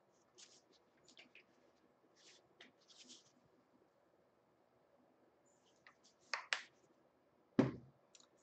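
Faint handling noises from gloved hands working with painting supplies on a table: soft rustles and scattered light clicks, then a couple of sharper clicks and a single knock near the end.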